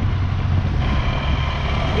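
Motorcycle engine running as it rides along, with rumble from wind and road. About a second in, a thin, steady high-pitched tone joins it.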